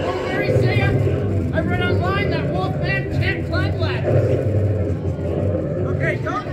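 A person's voice giving short wordless cries and calls over a steady low hum.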